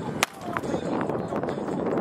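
Tennis ball impacts on a hard court: one sharp, loud pop about a quarter second in and a fainter tap about half a second in, over a steady background of noise.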